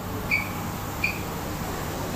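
Two short high-pitched beeps, about three-quarters of a second apart, over a steady low background hum.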